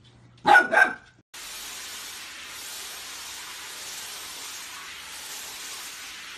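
Golden retriever puppy giving two quick barks about half a second in. From about a second and a half, a steady hiss takes over and runs on evenly.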